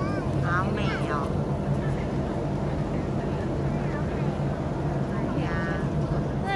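A steady low motor drone with a fixed hum, with brief distant voices about a second in and again near the end.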